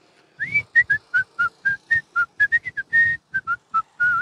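A person whistling a short tune of quick, separate notes that hop up and down in pitch, with one note held a little longer about three seconds in.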